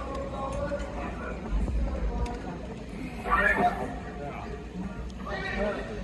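Lull between songs in a concert hall: faint voices and scattered small noises over a steady low hum from the stage amplification.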